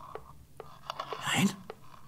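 Spinning wheel running with a steady soft whir and a light click about twice a second, under a single whispered word.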